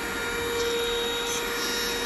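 Deerma handheld bed mite vacuum running steadily on a bed blanket: a steady motor whine over the hiss of its airflow.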